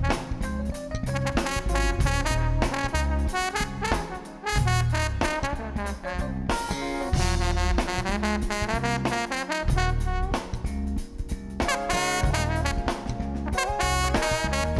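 Live band playing an instrumental passage, a trombone taking the lead line over drums, bass and keyboard.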